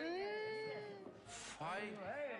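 A person's drawn-out wordless vocal sound, rising then falling in pitch over about a second, followed by short gliding voice sounds.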